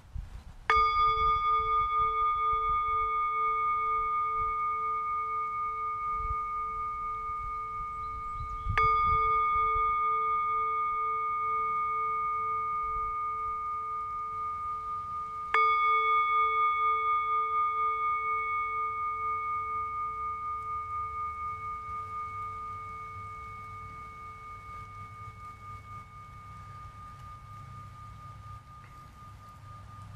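Tibetan singing bowl struck three times, about eight and seven seconds apart. Each strike gives a long ringing tone with a slow pulsing waver that fades gradually, and the last is still sounding faintly at the end. The strikes mark the close of the meditation.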